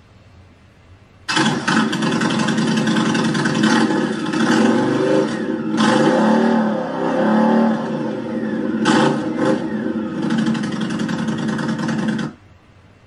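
Indian Scout Bobber's V-twin engine, fitted with a Freedom Performance Radical Radius exhaust, running and being revved. It cuts in suddenly about a second in, with a few rising and falling blips, and stops suddenly at the end.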